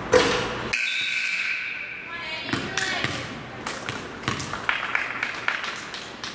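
A free-throw shot hits the rim with a sharp bang just after the start. A steady high tone follows for about a second and a half, then a basketball bounces repeatedly on the hardwood gym floor, about three bounces a second, with voices around it.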